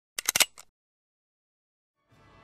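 A quick run of four sharp clicks within about a quarter second, then one fainter click.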